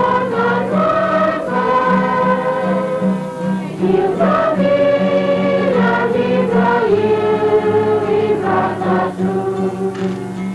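A congregation singing a church hymn together, many voices holding long notes and moving between them.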